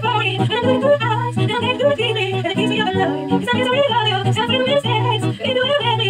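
A woman singing to her own acoustic guitar, which is capoed and playing chords under a continuous vocal melody.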